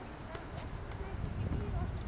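Faint voices over a low rumble that grows louder in the second half, with scattered light clicks.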